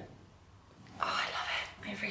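A woman's voice, soft and breathy like a whisper, starting about a second in after a near-quiet pause.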